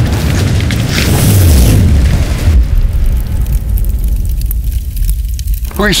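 A loud, deep booming rumble with a rushing noise over it that thins out about two and a half seconds in.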